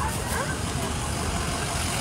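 Steady street rumble of vehicle engines running, with faint voices of people nearby in the first half second.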